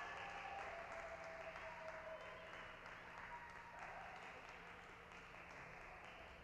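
Applause from a small audience, faint and dying away.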